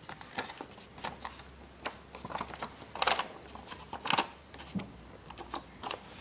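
Folded paper glider being picked up and handled, the paper rustling and crackling in a string of short, irregular crackles and taps.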